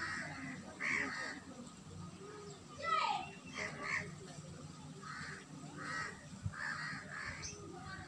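Crows cawing over and over, short harsh calls about once a second.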